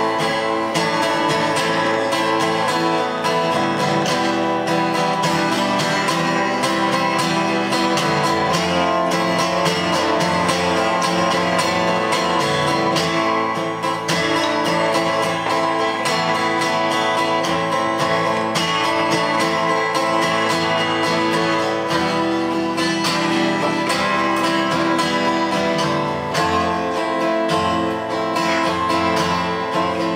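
Acoustic guitar strummed and played live, the instrumental introduction of a song.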